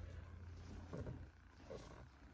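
Faint, steady low hum that drops away about one and a half seconds in, with a couple of soft thumps.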